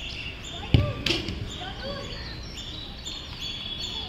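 A football struck on artificial turf: a sharp thump just under a second in, then a lighter knock a moment later. Birds chirp over and over in the background.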